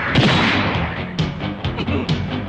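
Anime fight-scene soundtrack: background music with sudden impact sound effects, a heavy hit just after the start and a quick run of short, sharp hits in the second half.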